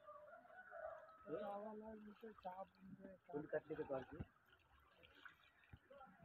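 Faint, indistinct human voices talking, which die away about four seconds in.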